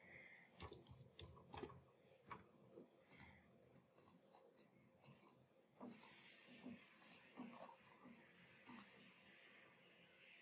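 Near silence with faint, irregular clicks of a computer mouse, a couple a second.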